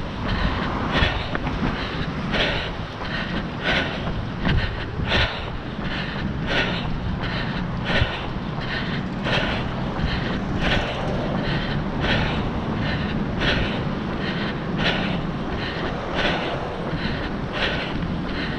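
Rhythmic footfalls and jostling of a camera carried by a runner, a regular beat about every 0.7 s, over a steady rumble of wind on the microphone.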